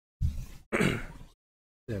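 A person clearing their throat twice in quick succession, the second harsher and noisier than the first.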